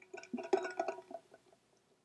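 A drink sucked up through a straw from a cup: a wet, sputtering sipping sound lasting about a second and a half.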